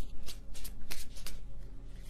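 A tarot deck being shuffled by hand: quick, crisp card flicks, about four a second.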